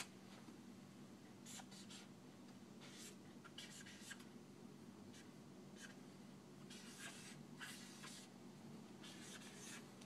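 Felt-tip marker writing numbers on flip chart paper: faint scratchy strokes in short clusters, over a steady low room hum.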